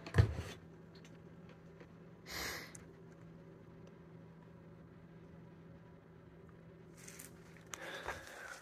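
Quiet room tone with a low steady hum, broken by a single thump just after the start and a short hiss about two and a half seconds in.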